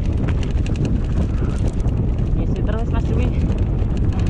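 Mountain bike riding down a rough dirt trail: loud, steady wind rumble on the microphone, with a fast run of rattling clicks from the bike over the bumps.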